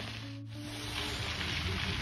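Bicycle tyres rolling over a loose gravel trail, a steady crunching hiss, with a low steady hum underneath.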